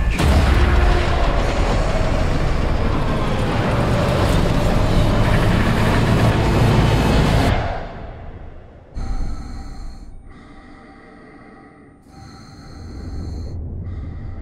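Film trailer soundtrack: a loud, deep rumbling roar under music that cuts off suddenly about seven and a half seconds in, followed by quieter sustained music chords.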